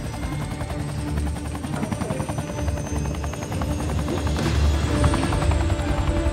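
Helicopter rotor chopping fast and steady as the helicopter lifts off, over a low engine rumble, with dramatic orchestral film score underneath; the chop swells louder about two-thirds of the way in.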